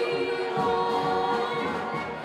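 A mixed group of men and women singing together in harmony through microphones, holding a long note, with a brass band accompanying.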